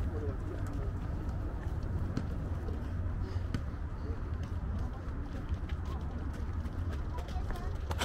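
Outdoor park ambience: indistinct chatter of passers-by and some bird calls over a steady low rumble, with scattered light clicks.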